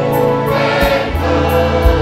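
Live gospel worship music: singing with violins and a band behind it, over a deep bass line and a drum beat.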